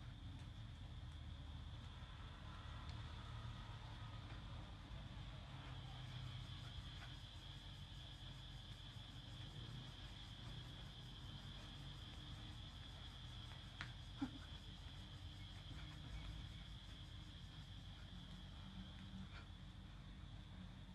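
Faint room tone: a steady low hum under a steady high-pitched drone, with one sharp click about fourteen seconds in.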